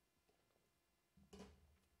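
Near silence, then about a second in a faint knock and some low handling noise.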